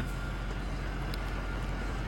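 Steady low drone of a Ford 6.0L Power Stroke V8 diesel idling, heard from inside the truck's cab.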